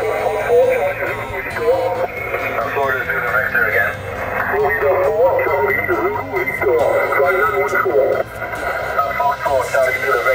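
Single-sideband voice from the 40-metre amateur band coming out of a Yaesu FT-897 transceiver's speaker: continuous, thin, narrow-band radio speech.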